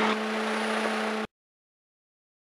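Steady hum and hiss of a small single-engine plane's cockpit audio while it taxis at low power. It cuts off abruptly to dead silence a little over a second in.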